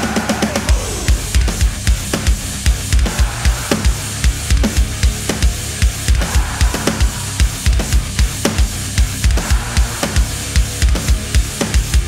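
Metalcore drum cover: an Alesis electronic drum kit triggering sampled drums, with steady heavy kick-drum pulses and cymbals over a distorted-guitar backing track, quickening into a fast run of double-pedal kicks near the end.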